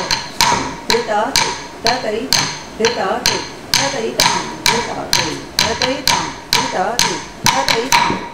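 Tattukazhi, the wooden stick struck on a wooden block, beating time for Bharatanatyam Alarippu in chatushra jati tishra gati. The strikes come steadily at about two a second, each sharp with a short ring.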